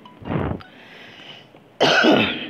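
A man coughing: a short cough about half a second in, then a louder, sharper cough near the end.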